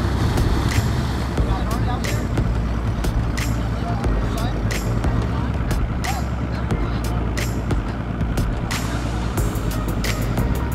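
Bass boat outboard motor running low and steady at idle as the boat creeps forward, with scattered light knocks over it.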